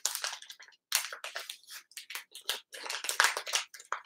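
Crinkly plastic wrapping around incense, rustling and crackling in quick irregular bursts as it is handled and pulled open.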